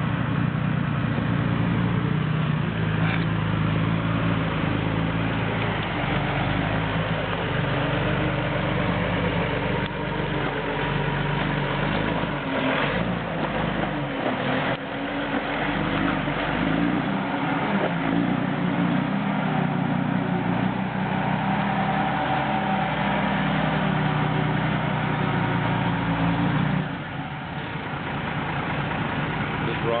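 Mercedes-Benz Unimog's diesel engine pulling slowly under load as the truck crawls over rocks, its pitch rising and falling with the throttle. The engine sound drops off a few seconds before the end as the truck moves past and away.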